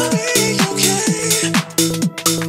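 Melodic house music with a steady dance beat, short notes that fall in pitch repeating in a regular pattern, and a chopped vocal glitch lead.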